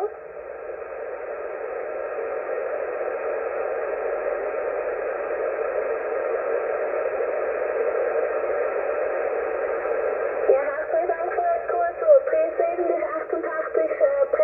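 Shortwave transceiver receiving single-sideband on 40 metres: a steady band-noise hiss that slowly grows louder for about ten seconds while no station is transmitting, then faint, unclear voices come through the noise about ten and a half seconds in.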